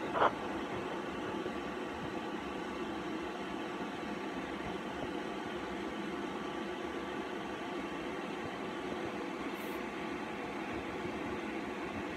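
Steady background hum and hiss, even throughout, with a brief short sound right at the start.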